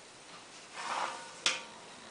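Kraft pattern paper and a ruler being handled: a brief soft rustle, then a single sharp tap about a second and a half in.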